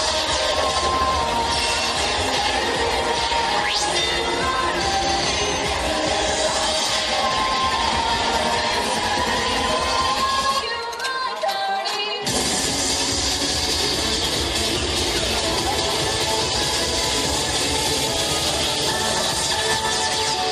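Dance music playing for a pom routine. About ten seconds in, the bass drops out for a second and a half, then the full music comes back in.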